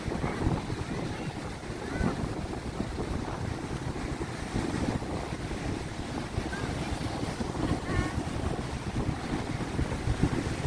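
Wind buffeting the microphone in uneven gusts, over the steady wash of rough surf breaking on the beach. A few faint, distant calls are heard about two seconds in and again near the end.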